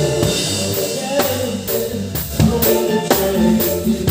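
Live rock band playing: a drum kit is prominent, with sharp regular hits and ringing cymbals over electric guitar and bass.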